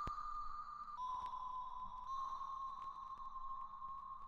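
A faint, steady electronic tone, high like a test beep, that steps down a little in pitch about a second in and then holds, with fainter high tones above it.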